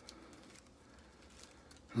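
Faint handling sounds of tenkara level line being wound onto a line holder on a fishing rod, with a few light ticks.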